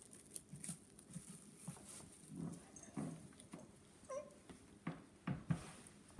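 Plastic wrap rustling faintly under hands on a glued veneer lid, with light knocks and a brief squeak about four seconds in. Near the end a heavy weight, about 20 pounds, is set on the wrapped lid with low thumps to clamp the glue.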